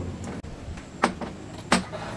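Two sharp knocks, about two-thirds of a second apart, as a RockShox Lyrik suspension fork is handled and fitted into a mountain bike frame's head tube.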